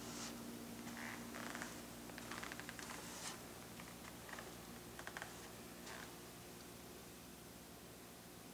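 Quiet indoor room tone: a faint steady hum with scattered soft clicks and rustles from handling, mostly in the first few seconds.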